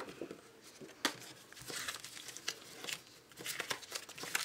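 Paper and plastic crinkling and rustling as sticker sheets and their packaging are handled, with a sharper rustle about a second in.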